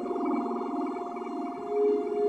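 Ambient electronic music: sustained, steady tones over a softly pulsing texture. A new held tone comes in about one and a half seconds in.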